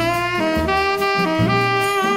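Tenor saxophone playing a bossa nova melody of held notes over a low accompaniment, with vibrato on the note near the end.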